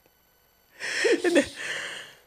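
A man's breathy laughter, beginning about a second in after a short silence, with a brief voiced bit in the middle.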